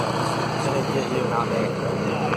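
Steady low drone of the engine pulling a hayride wagon as it rolls along, under the chatter of the riders.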